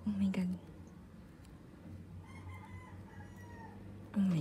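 A brief voiced sound from a person right at the start. Then, about two seconds in, a faint, slightly falling drawn-out call lasting about a second.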